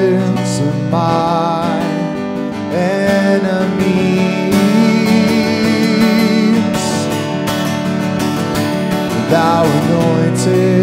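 Acoustic guitar strummed steadily under a man's singing, his voice holding long notes with a slight waver.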